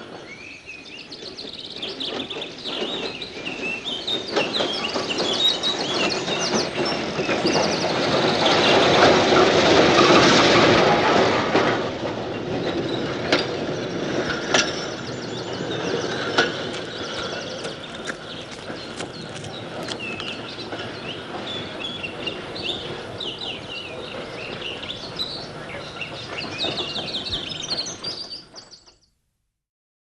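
Electric street tram running on rails, with a rumble that swells to its loudest about ten seconds in and scattered clicks from the wheels on the track. Birds chirp over it, and the sound fades out shortly before the end.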